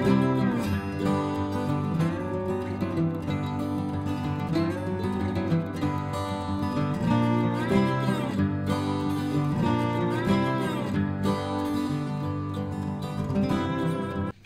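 Instrumental background music with guitar, playing steadily.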